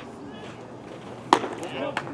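A pitched baseball smacking into the catcher's leather mitt: one sharp pop about a second and a half in.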